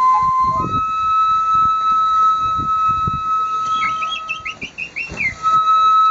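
Two shinobue, Japanese bamboo transverse flutes, playing a slow melody together: a long held note, then a flurry of short, quick higher notes about four seconds in before a held note resumes near the end.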